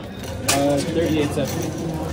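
Indistinct speech over a steady low hum, with a sharp click about half a second in.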